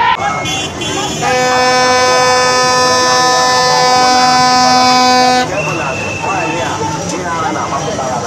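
A horn sounds one long, steady note for about four seconds, starting about a second in, over crowd voices and street noise.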